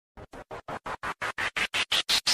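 DJ remix build-up effect: a rapid train of short, chopped noise pulses, about six a second, each louder and higher-pitched than the last, leading into the song.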